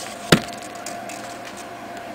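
A single sharp wooden knock about a third of a second in, as the wooden coil-winding form pieces are handled and bumped together, over a faint steady hum.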